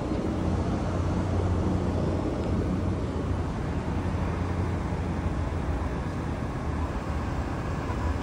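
Steady low rumble of street traffic noise.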